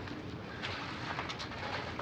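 Quiet room tone of a meeting hall picked up by a lectern microphone, with a faint rustle of paper being handled about halfway through.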